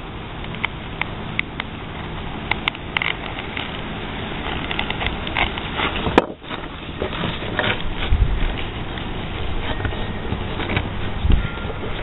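A knife blade scraping and skiving the flesh side of leather, with scattered small clicks of the leather being handled, over a steady background noise.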